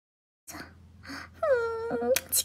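A woman's wordless, emotional cry: breathy sounds about half a second in, then near the end one long wailing note that dips and then holds. She is on the verge of tears.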